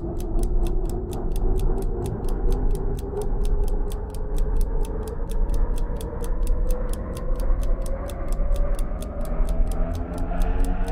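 Clock-like ticking sound effect, about four ticks a second, over a sustained music bed whose pitch rises slowly: a quiz countdown timer running.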